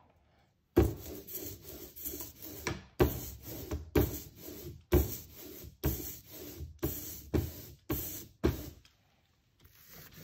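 Hand brayer rolled back and forth through printing ink on a glass inking slab, a rubbing stroke about once a second, stopping briefly near the end.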